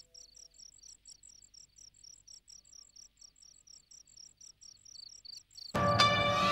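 Crickets chirping in a steady, even rhythm of about five high chirps a second, a quiet night ambience. Just before the end, a loud orchestral music sting with strings starts suddenly and covers them.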